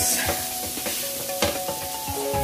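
Chopped smoked sausage, bell peppers and onions sizzling in a hot pan as metal tongs toss them, with a few sharp clicks and scrapes of the tongs against the pan.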